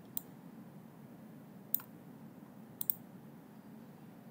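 Computer mouse clicks: one just after the start, one near the middle, and a quick double click about three seconds in, over faint steady background hiss.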